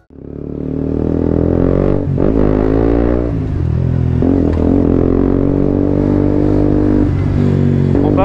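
A 2017 KTM Duke 125's single-cylinder engine, fitted with an Akrapovic exhaust, running while the bike rides along, heard from the machine itself. The sound fades in at the start, then holds steady, with the engine pitch dipping and climbing again about two seconds in, around four seconds and near seven seconds.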